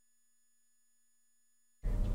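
Near silence: the audio feed drops out, leaving only a faint steady hum. A steady background noise comes back in near the end.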